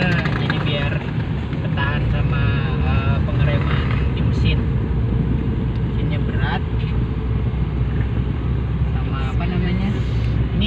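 Small car's engine running steadily in first gear down a steep descent, heard inside the cabin. It is held back by engine braking with the clutch half engaged, the car heavily loaded.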